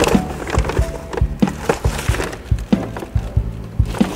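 Cardboard parts boxes and loose parts being handled and shuffled in a bag, a quick string of knocks and rustles, over steady background music.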